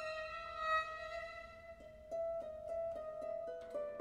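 Classical music led by a violin: held notes, then a little after halfway a run of short, separate notes stepping downward, about three a second.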